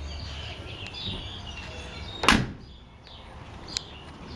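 The door of a 1955 Chevrolet Bel Air two-door is shut once with a single solid slam a little over two seconds in. Birds chirp faintly in the background.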